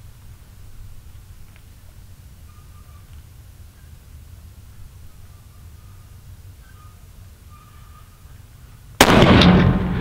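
A single rifle shot from a .375 Ruger firing a 260-grain bullet, a sudden loud crack about nine seconds in that rings out for about a second. Before it there is only a low steady rumble.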